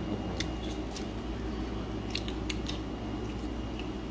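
A few light, sharp clicks and ticks of plastic food containers and a dipping-sauce cup being handled on a stone countertop, over a steady low hum.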